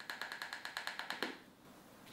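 A small plastic loose-powder container, of the salt-shaker type, rattling as it is handled: a quick even run of light clicks, about a dozen a second, that stops after about a second and a half.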